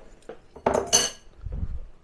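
A metal utensil clinking against kitchen dishware, a short ringing clatter about two-thirds of a second in, followed by a soft low thump.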